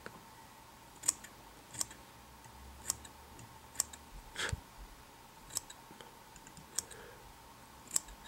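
Long scissors snipping through the fibers of a dubbing-brush fly body as it is trimmed flat, about eight separate crisp snips spaced irregularly, roughly one a second.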